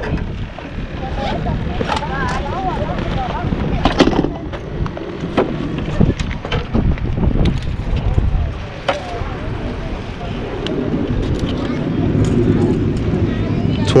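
Wind buffeting the microphone as a steady low rumble, with indistinct voices in the background and a few sharp knocks.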